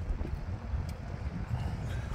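Wind rumbling on the microphone, with a faint click about a second in.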